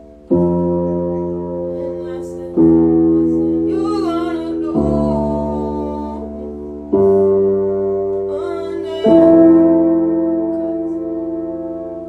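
Slow piano chords played on a keyboard: five chords struck about two seconds apart, each left to ring and fade. A voice hums or sings softly over them twice, in the middle and again near the end.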